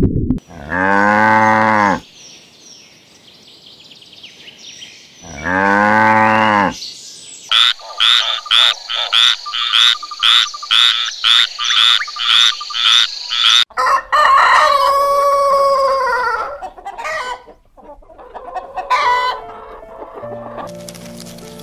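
A frog croaking in an even, rapid series of about fourteen croaks, a little over two a second, after two long drawn-out calls. Near the end, chickens calling: one long call and then shorter clucks.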